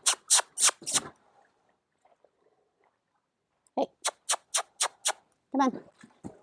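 Two quick runs of sharp mouth clicks, about four a second: four at the start and five more about four seconds in. They are a handler clucking to ask a horse to move off.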